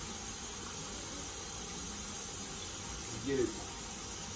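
Steady, even hiss of background room noise, with no distinct handling sounds.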